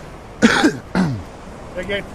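A man laughing: two short bursts, each falling in pitch, about half a second and one second in.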